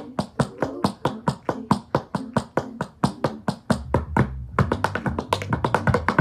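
Tap shoes striking a wooden tap board in quick, even taps, about six a second. The taps thin out briefly about four seconds in, then come in a faster burst near the end.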